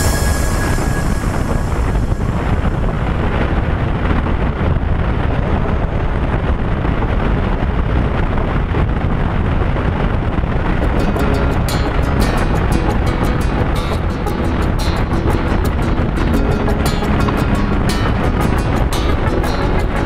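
Electronic dance music track; a steady, regularly spaced drum beat comes in about eleven seconds in.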